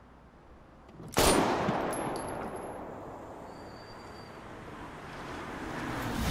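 A single loud pistol gunshot from a TV crime drama about a second in, followed by a couple of fainter cracks and a long fading noise, with the sound swelling again near the end.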